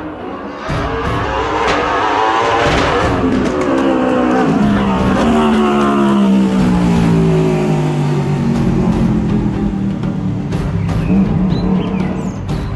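Single-seater race car engine revving hard as it accelerates past, its note climbing, then dropping steadily as the car pulls away up the road.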